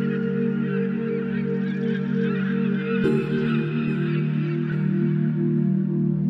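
Soft, sustained ambient music chords, changing to a new chord about halfway through, layered with many short bird calls that thin out in the second half.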